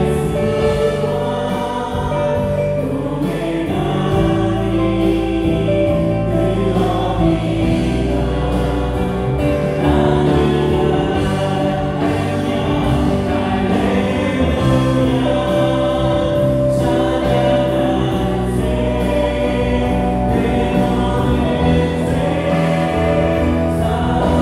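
Church praise band playing a gospel hymn at steady volume: electric guitar, bass guitar, keyboards and a drum kit keeping a regular beat, with a group of voices singing along.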